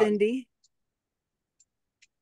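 A voice trails off in the first half second, then near silence, broken only by two faint ticks.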